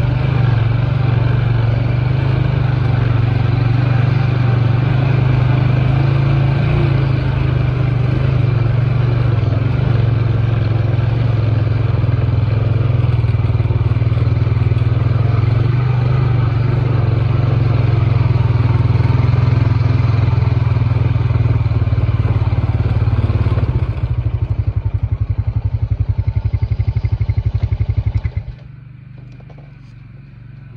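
ATV engine running steadily while under way. About six seconds from the end it drops to an evenly pulsing idle, then cuts off a second and a half before the end, leaving a much quieter background.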